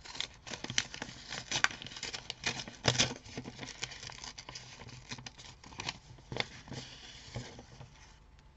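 Paper envelope being handled and opened by hand: rustling and crinkling paper with many short crackles, the loudest about three seconds in.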